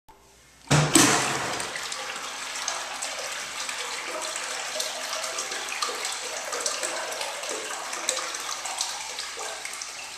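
American Standard wall-hung urinal flushing: the flush starts with a sudden rush of water just under a second in, then water runs with a steady hiss that slowly tapers off.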